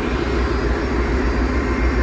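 Boat engine running steadily at trolling speed: a steady, even, low drone.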